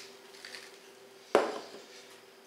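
A single sharp knock of a kitchen item against a hard surface about a second and a half in, over a faint steady hum.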